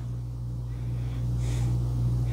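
Faint sniffing as a whiskey tasting glass is held to the nose, over a steady low hum.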